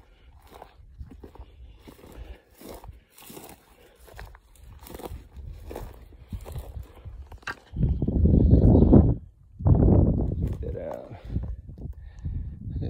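Footsteps crunching through dry grass and brush, a scatter of faint crunches and snaps. Near the end come two loud, low rushing sounds about a second and a half each, close on the microphone.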